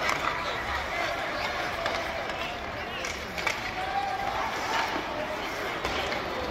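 Ice hockey arena crowd chatter during live play, with scattered sharp knocks of sticks and puck on the ice and boards.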